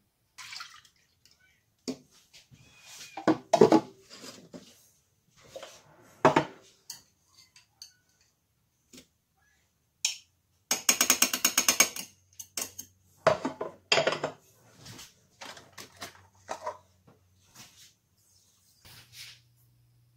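Kitchen handling sounds: a saucepan, utensils and ingredient containers knocking and clinking on a glass-ceramic hob and worktop, with a quick rattling burst about halfway through. A faint low hum starts around then as the hob heats.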